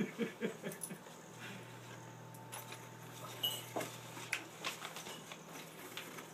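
A dog whimpering in short whines during the first second, then paper and cardboard crinkling and rustling as a gift box is opened, over a low steady hum.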